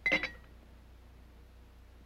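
A single short clink of glass with a brief high ring, dying away within half a second, as a glass tube is handled beside the model. After it only a faint low hum remains.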